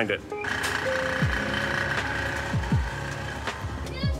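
Background music: a held synth chord with deep, falling bass-drum hits about a second apart, starting just after the last spoken word.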